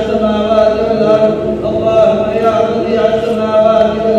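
A man chanting an Arabic supplication (dua), his voice intoned in long, drawn-out phrases.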